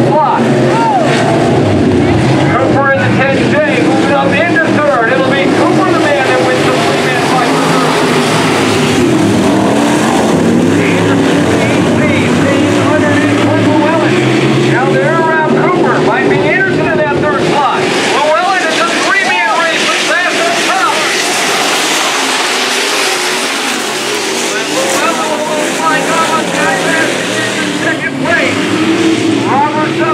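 Pack of dirt-track modified race cars running at speed, their engines rising and falling in pitch as they rev through the turns and pass by.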